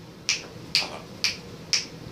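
Four sharp clicks, evenly spaced about two a second.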